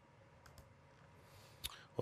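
Faint room tone with a few soft clicks in the first second and a short, sharper noise near the end.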